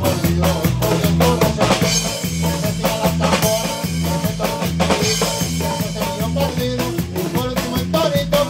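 Norteño band playing a zapateado live, with drum kit, bass and a guitar-type string instrument over a steady beat.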